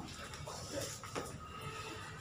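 Quiet room with a few faint, brief handling sounds as a textbook is lowered and moved.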